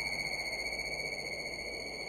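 Ambient electronic music: one steady, high, sine-like tone with faint overtones, held without change over a soft hiss.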